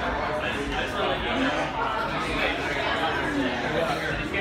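Indistinct chatter of several people's voices.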